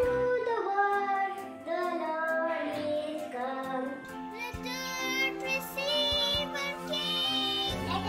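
Young children singing a Christmas carol, with music behind them.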